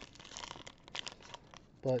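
Plastic trading-card pack wrapper being torn open and crinkled by hand: faint crackling with a few short rustles.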